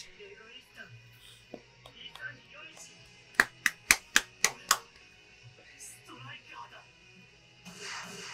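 Six quick hand claps in a row, a little over four a second, the only loud sound in an otherwise quiet stretch.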